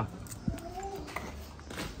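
A light click about half a second in, followed by a single short, faint animal call.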